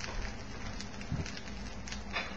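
A grilled cheese sandwich frying in butter in a skillet: a steady, even sizzle with faint scattered crackles.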